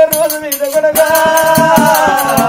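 Telangana Oggu Katha folk music: a voice singing a long, wavering held melodic line over quick, steady rattling percussion strokes.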